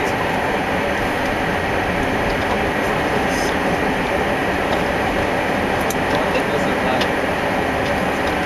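Steady rush of wind and road noise in a moving car, an even noise with no sharp events.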